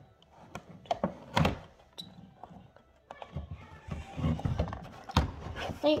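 Barbie doll-set packaging being handled while the doll is worked loose: a few sharp knocks and taps, the loudest about a second and a half in and another near the end, with rustling in between.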